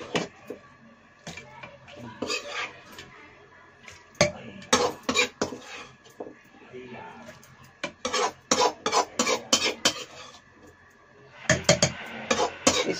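Metal spatula and ladle clinking and scraping against a kadai and an aluminium pressure cooker as vegetables are scooped into the dal, with clusters of sharp clinks about four seconds in and again around eight to ten seconds.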